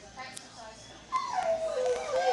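A dog whining: one long call that starts about a second in and slides down in pitch, over faint talking in the background.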